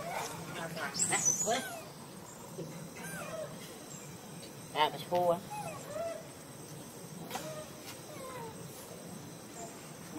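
Young macaque monkeys calling: short, high-pitched chirps and squeals that rise and fall in pitch. The loudest come in a cluster about a second in and as a sharp pitched call about five seconds in.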